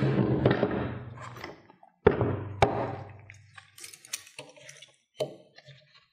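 Automotive brake boosters handled on a wooden workbench: a heavy thunk with a short ring as one is set down about two seconds in, then light metal clicks and clinks of calipers against the pushrod clevis, with one sharper knock near the end.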